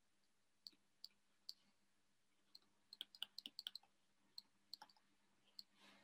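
Faint, scattered clicks of a stylus touching down on a writing surface during handwriting. They come singly, with a quick run of about eight clicks near the middle.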